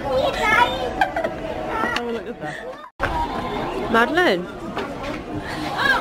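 Indistinct chatter of adults and children in a busy shop, cut off abruptly by a moment of silence about three seconds in before the voices resume.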